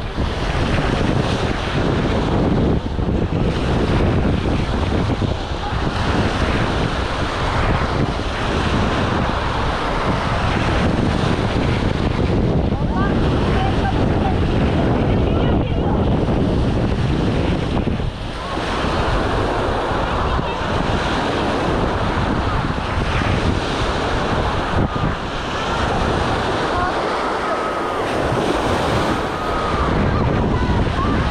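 Small waves washing onto a sandy shore, with wind rumbling on the microphone and voices of people on the beach in the background.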